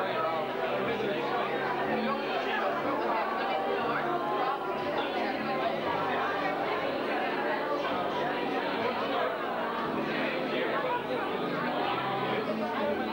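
Chatter of many people talking at once, their voices overlapping.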